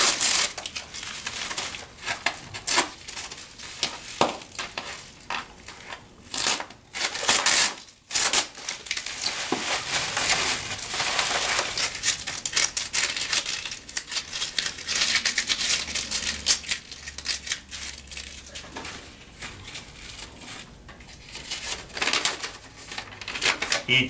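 Plastic bubble wrap and packing tape being pulled apart and crinkled by hand while a small package is unwrapped: an irregular run of rustles and sharp crackles.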